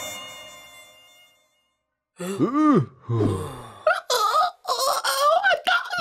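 Music fades out over the first second or so; after a short silence, a cartoon caveman's voice makes a series of wordless groans and wails, each rising and then falling in pitch.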